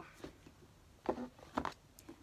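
Quiet handling of paperback books and their cardboard box set, with two brief scuffs, about a second in and again just after.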